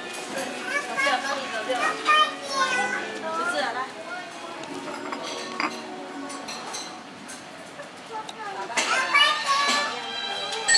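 Restaurant din: children's high voices and general chatter over background music, with an occasional clink of tableware, including one sharp clink about halfway through. The voices grow louder near the end.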